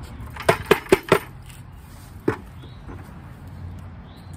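Hollow knocks of a plastic bucket as straw is tipped out of it into a plastic milk crate: four quick knocks about half a second to a second in, then one more about two seconds in.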